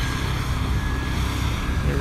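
Wind rumbling steadily on the microphone, with a faint steady hum under it.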